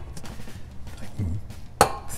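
Spice jars being moved about on a kitchen shelf, with a sharp clink of glass or a lid near the end.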